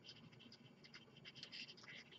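Faint scratching of a felt-tip marker writing letters on paper, in a series of short strokes.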